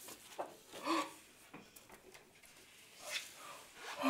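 Quiet human vocal sounds: a short voiced sound about a second in, a breathy exhale a little after three seconds, and the start of a loud yawn right at the end.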